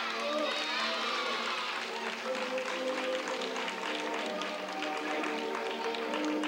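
Young girls cheering and shouting in a gym, fading out in the first second or so, then music with held notes and light clicks running over it, with voices underneath.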